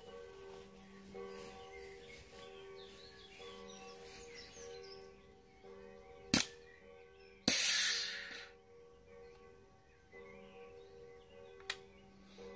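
Luger P08 replica CO2 blowback airsoft pistol firing: a sharp crack about six seconds in, then a loud hiss of gas that starts abruptly and dies away over about a second, and a lighter click near the end. The CO2 capsule is empty or running out.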